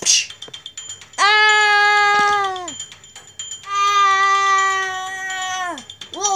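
A voice holding two long, high, steady notes, like a drawn-out wailed or sung 'aaah', each about a second and a half, trailing off with a falling pitch. There is a short hissy burst at the very start.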